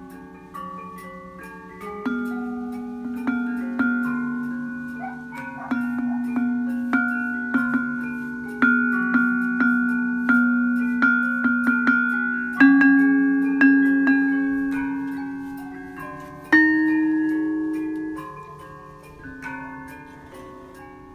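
Iron keys of a Balinese selonding, laid over a wooden box, struck one after another with a wooden mallet: clear ringing notes at several pitches, each dying away slowly. The strikes come quicker in the middle, with a last loud one about two thirds of the way through that rings on.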